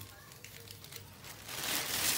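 Plastic packaging sleeves crinkling as they are handled, faint at first and growing louder near the end.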